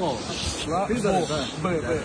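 Men talking in a lo-fi phone recording, with a steady hiss under the voices.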